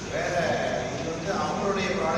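Speech: a man talking into table microphones.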